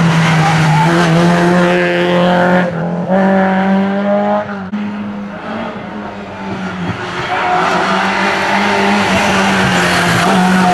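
Rally car engines at hard throttle, pitch climbing and dropping back as they change up through the gears. There is a sudden break about halfway, and the engine sound dips for a few seconds before building again.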